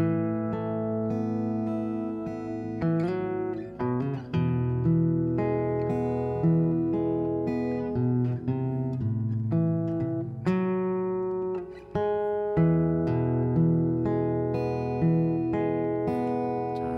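Martin OMC-28E steel-string acoustic guitar fingerpicked: a slow arpeggiated passage over Aadd9, E, A minor and E chords, single notes ringing into one another. There is a brief gap about twelve seconds in before the picking resumes.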